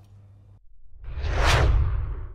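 Whoosh sound effect of a TV channel's logo ident, swelling from about half a second in to a peak and then fading, over a deep low rumble.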